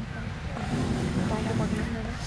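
Indistinct talking from people nearby over a steady low background rumble. No word is clear enough to be transcribed.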